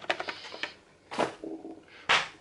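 Small cardboard box being handled and set down: a quick run of light clicks and taps, then another short knock about a second in.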